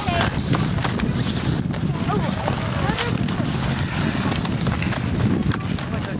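Children's voices chattering indistinctly over wind buffeting the microphone, with a few sharp clicks.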